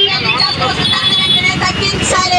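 Protesters shouting slogans, a woman's voice amplified through a microphone with others joining in, over a constant low rumble of street noise.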